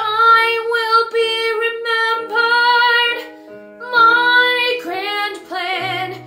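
A young woman singing a musical-theatre song solo over piano accompaniment, holding notes with vibrato, with a short break in the voice about halfway through.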